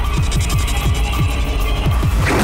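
Tense suspense background score: a heavy low drone under short falling bass pulses, about four a second.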